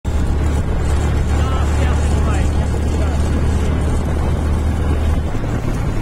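Motorcycle riding along at road speed: steady engine and road noise under a heavy low rumble of wind on the microphone, which eases off about five seconds in.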